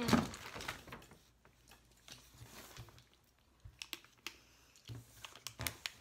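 Snack packaging being handled on a table: scattered light clicks and crinkles of a plastic wrapper, growing busier in the second half, after a brief "mm" at the start.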